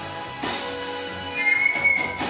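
Live band music: sustained chords with a cymbal crash about half a second in, and a high held tone rising over the music near the end.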